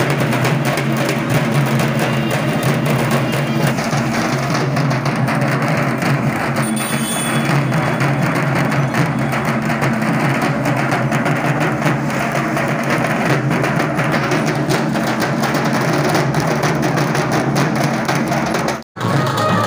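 A troupe of dhakis playing dhaks, large double-headed Bengali barrel drums beaten with sticks, together in a fast, dense, unbroken rhythm.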